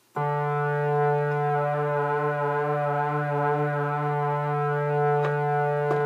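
Moog Multimoog analog synthesizer holding one low note, which starts abruptly and stops at the end. Its upper harmonics waver slightly while the oscillator waveform is modulated from a voltage control source. There is a faint click near the end.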